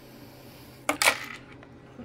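Small louvered vent covers being handled: a light click about a second in, then a short clatter, over quiet room tone.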